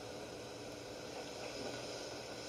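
Steady, even hiss of background noise and room tone, with no distinct event.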